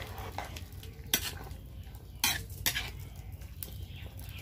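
Long metal spoon stirring a simmering gourd-and-fish curry in a metal karahi. The spoon scrapes and clatters against the pan a few times over a steady low sizzle.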